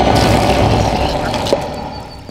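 Cartoon Platypus Bear roaring: a loud, rumbling roar that ends with a sharp click about a second and a half in, after which the sound drops away.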